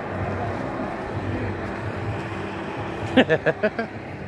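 Steady outdoor background noise with a low hum, broken near the end by a quick run of short voice sounds, like a laugh or a few clipped syllables.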